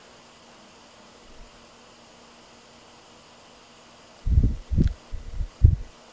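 Faint steady hiss with a low hum, then, about four seconds in, a quick run of five dull low thumps over about a second and a half: handling noise from the hand-held phone as it is held and tapped.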